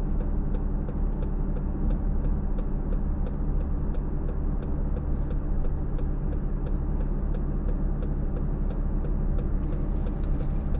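A car's turn-signal indicator ticking evenly, about three ticks every two seconds, over the steady low hum of the engine idling, heard from inside the cabin.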